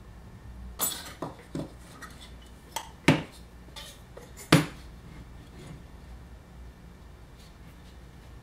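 Wooden pipe parts being handled and set down on a workbench: a short series of sharp knocks and clinks, the two loudest about three and four and a half seconds in, then quiet handling.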